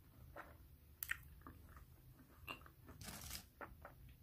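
Faint, close-up chewing of a hard frozen red bean and taro ice cream bar: scattered crunches and small clicks with the mouth closed. The sharpest crunch comes just after a second in, and a longer crunch comes about three seconds in.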